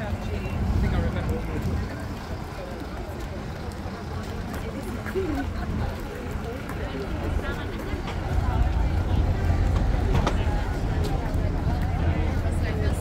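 Busy city street ambience: passersby talking and a low rumble of road traffic, growing louder over the last few seconds.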